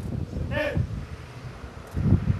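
Wind buffeting the microphone, with one short, arching call about half a second in.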